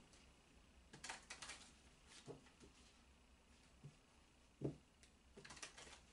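Faint, scattered soft rustles and taps of a deck of Gypsy Witch oracle cards being shuffled by hand, with one slightly louder soft knock about three-quarters of the way through and a quick run of brushes near the end.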